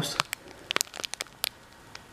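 Thin clear plastic bag crinkling as it is handled in the fingers: a string of sharp, irregular crackles, mostly in the first second and a half, then dying away.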